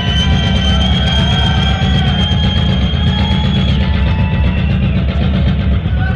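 Loud live rock music from a full band. A single high note is held for about the first three and a half seconds, then stops, over a dense, fast-pulsing low rumble of drums and bass.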